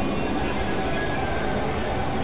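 Experimental synthesizer noise drone: several steady, high, squealing tones held over a dense, rough low rumble, with no beat.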